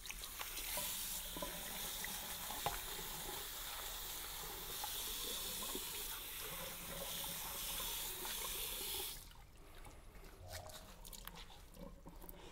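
Water tap running into a small sink as a blackboard sponge is wetted under it, a steady splashing rush that stops suddenly about nine seconds in when the tap is turned off.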